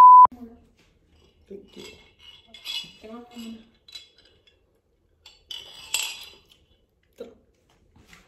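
A short, loud electronic beep right at the start, then a glass jar clinking and sips through a straw in scattered short bursts, the loudest about six seconds in.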